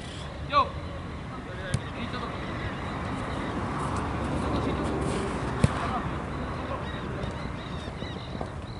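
Football being kicked on an artificial-turf pitch: two sharp ball strikes, one about two seconds in and a louder one near the six-second mark. A player's short shout comes about half a second in, over a noisy background that swells in the middle.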